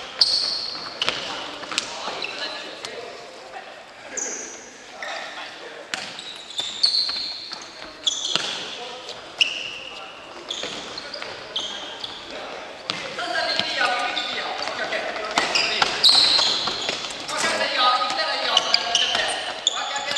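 Futsal play in a gymnasium: indoor shoes squeaking on the wooden floor in many short, high chirps, and the ball being kicked with sharp knocks. Players call out, more busily from about two-thirds of the way in.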